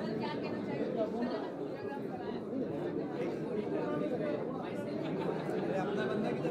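Many people talking at once in a busy room, a steady babble of overlapping voices with no single clear speaker.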